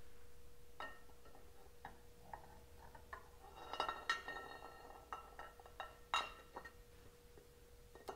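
Faint metal clicks and clinks as a chrome Harley-Davidson rocker box cover is handled and set down over the cylinder head. There is a cluster of ringing clinks about four seconds in and a sharp click near six seconds.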